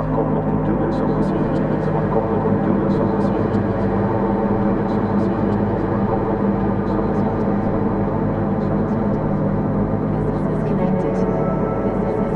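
Ambient drone improvisation: a dense, steady bed of layered held tones from a bowed, piezo-amplified DIY noisebox sent through delay and reverb, with faint scattered ticks. A voice from a live radio is mixed into the texture.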